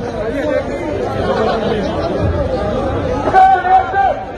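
Protest crowd talking and shouting over one another, with a louder voice calling out near the end.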